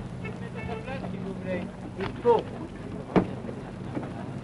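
Faint, brief fragments of distant voices in an old mono radio recording, over a steady low hum and hiss. There is a single sharp click a little after three seconds in.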